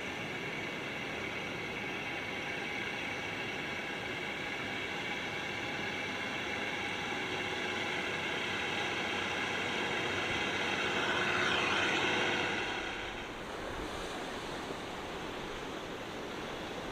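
A tractor's diesel engine runs at a steady pitch as it tows a boat on its trailer over sand, growing louder as it comes closer. Near the end it gives way to surf washing on the beach, with some wind.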